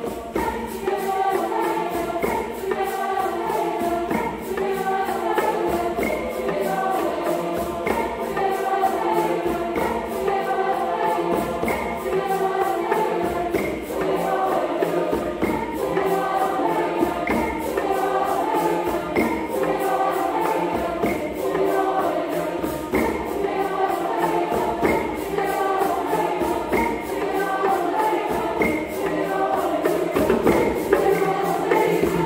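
A mixed choir singing in parts, accompanied by djembes and other hand drums playing a steady, even beat.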